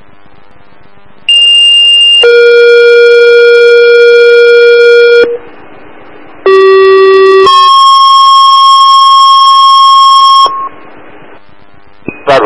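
Two-tone sequential fire-department paging tones over a scanner radio, alerting firefighters' pagers to a call. First a high tone of about a second steps down to a long lower tone of about three seconds. After a short pause of radio hiss comes a second pair: a low tone of about a second steps up to a long higher tone of about three seconds.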